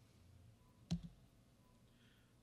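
A single sharp click, with a slight low thump, about a second in, close to the lectern microphone, against quiet room tone.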